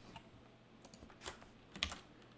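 A few separate keystrokes on a computer keyboard, spaced out, with the loudest near the end.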